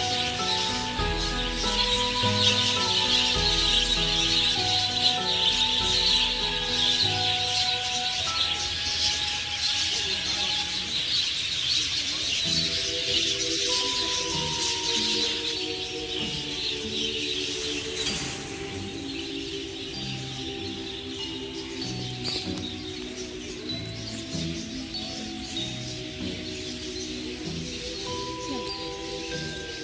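Background music with a melody of steady notes, over the dense, continuous chatter of a large flock of budgerigars that fades out about two thirds of the way through.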